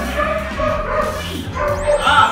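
Puppies yipping and barking in play, several short calls in a row, over background music.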